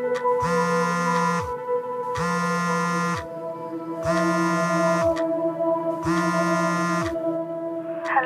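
Mobile phone vibrating with an incoming call: four evenly spaced buzzes, each about a second long, over sustained background music.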